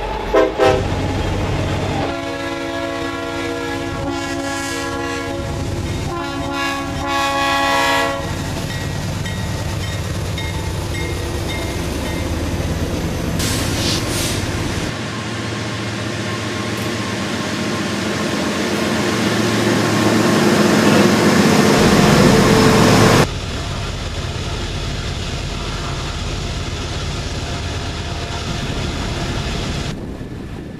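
Freight trains behind Norfolk Southern diesel locomotives: a multi-chime horn sounds for several seconds in the opening part, then steady noise from the passing train. In the middle a locomotive comes closer and grows louder until the sound cuts off suddenly.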